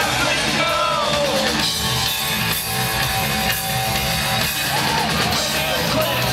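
Punk rock band playing live and loud: electric guitars and drums, with shouted vocals near the start and again about five seconds in.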